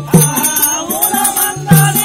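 Live folk-theatre music: a voice sings a long, held line over a two-headed hand drum, whose deep booming stroke falls just after the start and again near the end, with sharp metallic clicks keeping the beat in between.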